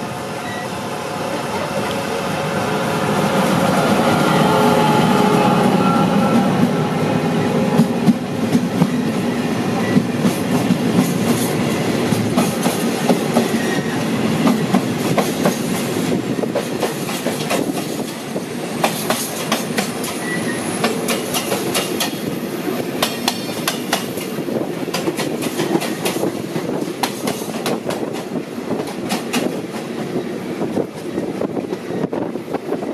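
A diesel locomotive passing close by on the next track, its engine building to a peak about five seconds in, then a long freight train of tank wagons rattling past with quick, continuous wheel clicks over the rail joints, heard from the window of a moving train.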